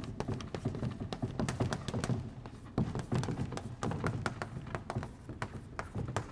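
Chalk writing on a blackboard: an irregular run of quick taps and scratches as the letters are stroked out.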